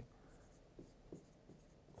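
Near silence, with a few faint strokes of a pen writing numbers on a lecture board.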